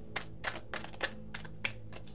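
A deck of tarot cards being handled and shuffled by hand: a quick, irregular string of light card taps and flicks.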